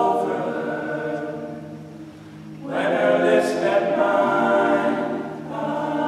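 All-male a cappella group singing sustained chords in close harmony. The chord fades about two seconds in, and the voices come back in louder about a second later.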